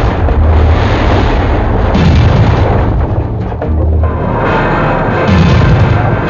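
A backdraft explosion in a burning paint shop heard as a loud, continuous deep rumble of booming, mixed with dramatic music. In the second half a tone glides slowly downward.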